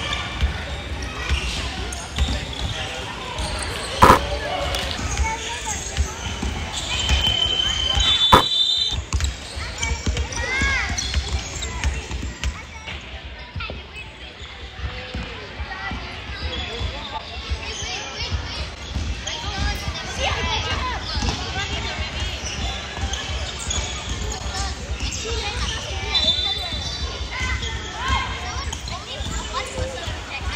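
A basketball being dribbled and bounced on a hardwood court in a large echoing hall, with repeated low thuds, a sharp loud knock about four seconds in and another near eight and a half seconds. Brief high-pitched squeals come a little before the middle and again near the end, over the voices of players and spectators.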